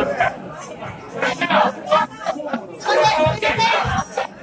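People chattering, several voices talking in a large room.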